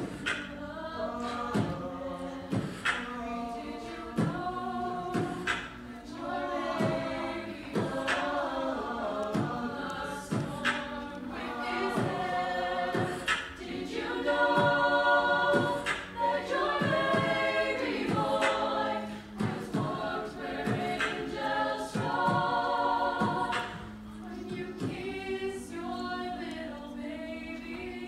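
A chamber choir singing in harmony, with a sharp beat about once a second under the voices.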